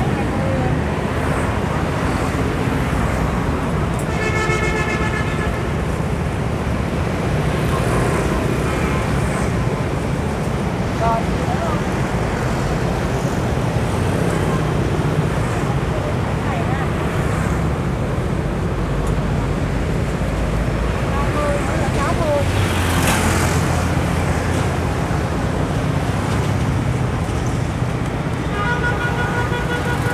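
Steady street traffic of motorbikes and cars passing on a busy road, with a horn sounding briefly about four seconds in and a vehicle rushing close past a little after twenty seconds.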